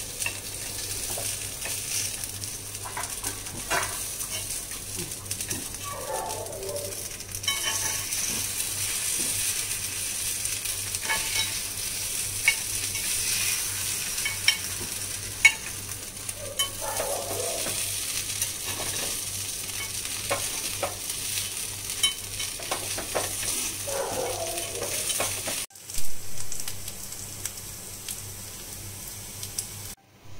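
Kuzhi paniyaram batter frying in oil in a paniyaram pan, sizzling steadily, with scattered clicks of a metal knife tip against the pan as the balls are turned. The sizzle cuts off abruptly a little before the end.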